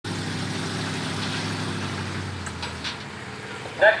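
A vehicle engine running steadily at a low idle, fading away about two and a half seconds in.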